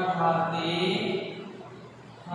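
A man's voice drawing out a syllable on one steady, chant-like pitch for about a second and a half, then fading.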